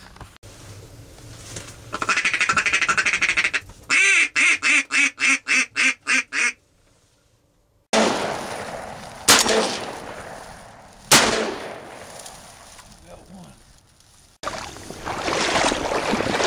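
A series of about nine evenly spaced duck quacks, followed after a short silence by two shotgun shots about two seconds apart. A steady rushing noise starts near the end.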